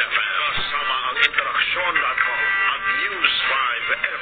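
Broadcast station-ID music with a voice over it, thin and cut off in the treble as from an old TV recording, with a brief click about a second in.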